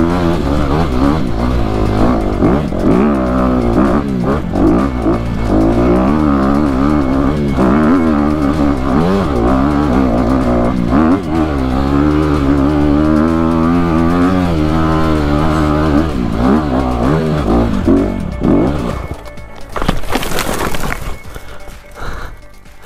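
Honda CRF250RX's single-cylinder four-stroke engine revving hard under load on a steep, rocky hill climb, its pitch rising and falling with the throttle. Near the end the engine note drops away and a brief burst of noise follows.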